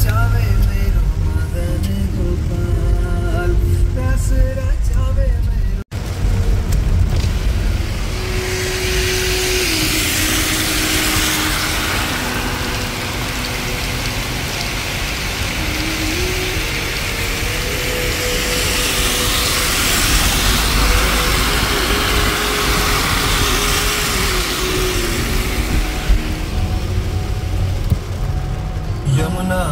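A road vehicle's steady low rumble, joined from about eight seconds in by a steady hiss, under a slow chant-like melody of held notes. The sound cuts off abruptly for an instant about six seconds in.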